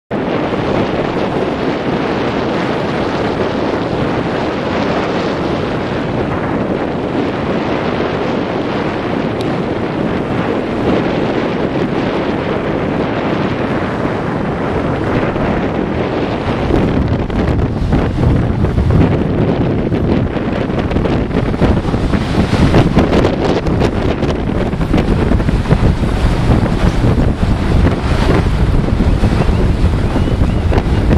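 Wind buffeting the microphone over the rush of sea water around a moving boat, a continuous noise that grows louder and gustier about halfway through.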